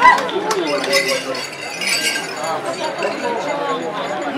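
A group of Turkana cultural performers chanting and calling out in overlapping voices, with a quick run of repeated syllables a little past halfway. Light clinking and clicks sound along with them, most of all near the start.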